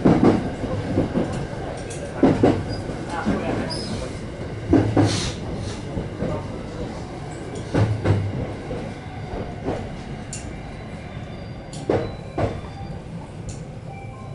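Train wheels clacking over rail joints and points as the train slows into a station: the knocks come in pairs, further apart each time, over a running rumble that fades.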